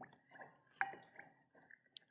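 Wooden spoon stirring liquid in a small glass bowl: faint sloshing with a few light clinks against the glass, the clearest a little under a second in.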